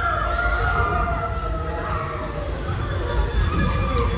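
A group of children's voices shouting and calling out together, several long drawn-out cries overlapping.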